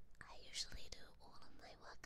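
A young woman whispering close to the microphone: soft, breathy speech with crisp sibilants.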